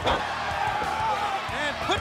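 Men's voices of a wrestling TV commentary over steady arena crowd noise, with music underneath.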